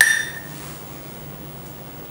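A single metallic clink as a utensil strikes a stainless steel pot, ringing out for about half a second.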